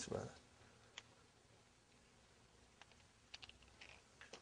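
Near silence, broken by a few faint, scattered clicks: one about a second in and several more near the end.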